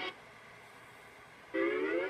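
Soundtrack music from a TV speaker: the cartoon's music cuts off at once, a gap of faint background hiss follows, and about one and a half seconds in a loud orchestral chord starts and glides upward.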